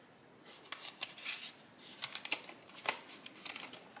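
Soft rustling of paper cash envelopes and the binder's plastic pages being handled, with a few light clicks, as a bill is tucked into an envelope and the pages of an A6 cash binder are turned.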